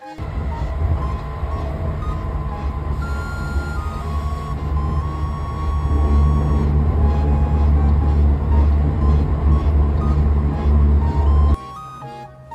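Steady low rumble of a moving train heard from inside the carriage, growing louder about six seconds in and cutting off suddenly near the end, with background music over it.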